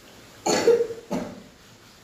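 A person coughs twice: a longer cough about half a second in and a shorter one just after a second.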